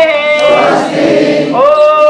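A crowd of voices chanting together in unison, drawn out on long held notes.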